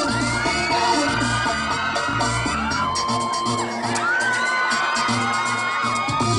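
Dance music with a steady beat, with an audience cheering and whooping over it.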